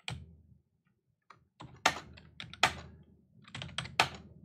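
Computer keyboard keystrokes: a couple of taps at the start, a pause of about a second, then a quick run of key clicks with two louder strokes among them.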